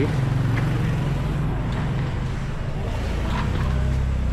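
A vehicle engine idling close by, a steady low hum that gets deeper and heavier near the end, with faint voices in the background.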